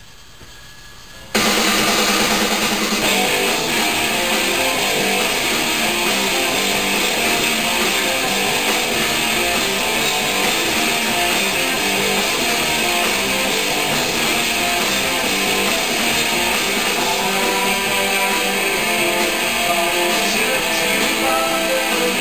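Rock music with electric guitar, played through the small two-inch speaker at one end of a propane Rubens tube. It starts abruptly about a second in after a brief quiet gap and then keeps a steady loudness.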